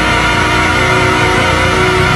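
Church choir singing sustained chords with instrumental accompaniment.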